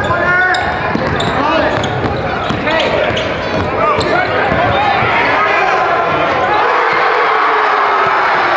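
Basketball game in a gym: the ball bouncing on the court amid short shouts and voices, with crowd noise swelling through the second half.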